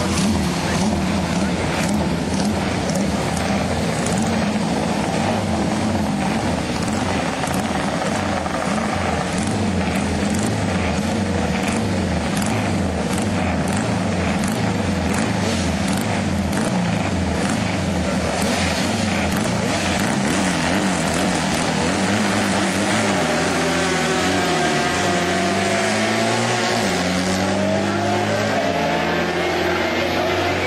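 Several racing sidecar outfits' engines running at high revs on the start grid. Near the end they rise and fall in pitch through the gears as the outfits accelerate away.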